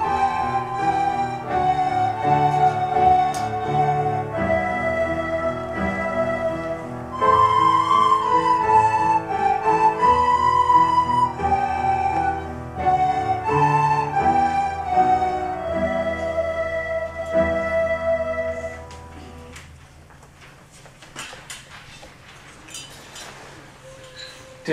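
Children's recorder ensemble playing a slow melody in several parts, with low held notes underneath. The music stops about 19 seconds in, leaving quieter room sound with a few small knocks and rustles.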